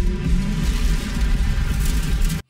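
Electronic film-score music with heavy bass, playing steadily from the movie's soundtrack.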